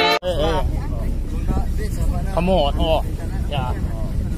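Indistinct chatter from passengers riding in the open cargo bed, over the steady low rumble of a Mahindra Bolero pickup's engine and road noise. Background music cuts off abruptly just after the start.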